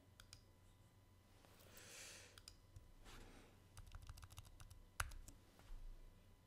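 Faint, scattered clicks of a computer mouse and keyboard as a screen display is switched over. The clicks are thickest between about four and five seconds in, with one sharper click about five seconds in, and a soft breath comes around two seconds in.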